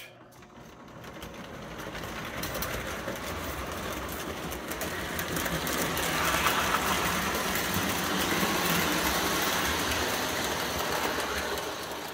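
Lionel 763E Hudson O-gauge toy locomotive running on three-rail tinplate track, with its electric motor and gears whirring and its wheels clattering over the rails. The sound grows steadily louder over the first several seconds and starts to fall away at the very end.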